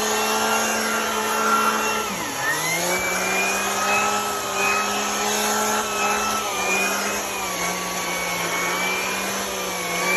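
Vacuum cleaner running steadily, its TurboEraser pet-hair turbo brush tool and bare hose end sucking over a carpeted car floor mat. The motor's whine dips in pitch about two seconds in and recovers, with a smaller dip later.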